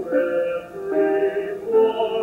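A solo voice singing a slow song from the musical on stage, holding each note for about half a second.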